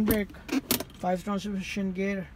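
A quick cluster of sharp clicks from the centre console of a 2005 Suzuki Baleno as a hand works a part between the front seats, about half a second in, with a man talking around it.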